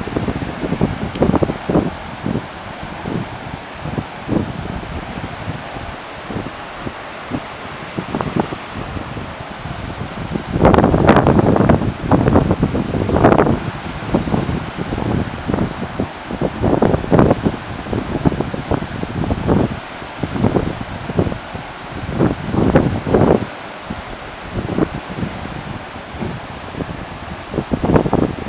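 Wind buffeting the microphone in irregular gusts, heaviest about eleven to thirteen seconds in, over a steady rush of wind and surf.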